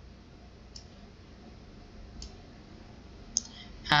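Faint computer mouse clicks, two about a second and a half apart and a third shortly before the end, over low background noise.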